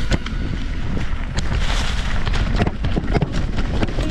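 Riding noise from an e-mountain bike descending a leaf-covered dirt trail: wind buffeting the microphone and knobby tyres rolling over dry leaves and dirt, with frequent small clicks and knocks as the bike rattles over the ground.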